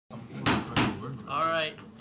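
Two sharp knocks about a third of a second apart, then a brief spoken word.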